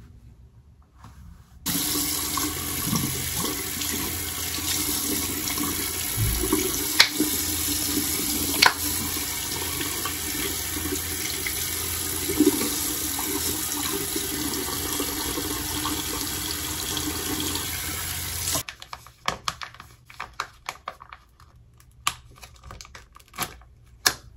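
Bathroom sink tap running in a steady stream, turned on about two seconds in and shut off suddenly a few seconds before the end, with two sharp clicks while it runs. After it stops, faint small clicks and rustles.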